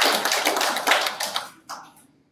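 Audience applauding, dying away about a second and a half in, with a last clap or two just after.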